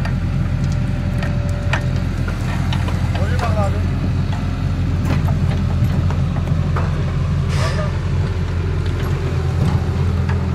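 Excavator's diesel engine running steadily with an even low hum, a few short clicks and knocks over it.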